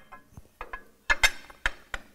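A steel rear motor mount plate clicking and knocking against the back of an LS engine block as it is slid over the dowel pins and seated: a few short, sharp knocks at irregular intervals.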